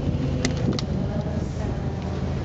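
Outdoor crowd ambience: low, steady rumble with a faint murmur of voices, and two short sharp clicks, about half a second and just under a second in.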